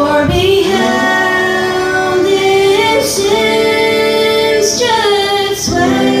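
A woman singing into a microphone, holding long notes.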